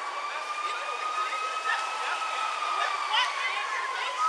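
Emergency-vehicle siren in one long slow wail, rising gently in pitch and then falling away, with faint voices underneath.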